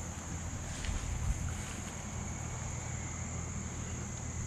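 Steady high-pitched chorus of crickets in the woods, over a low rumble of wind on the microphone.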